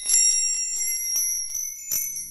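Intro music of high, bell-like chimes tinkling: several ringing tones struck over and over, stopping just after the title card ends.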